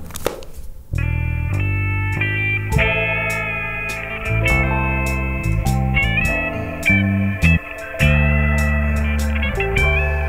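Background music from the film's score: sustained notes over a low bass line, coming in about a second in.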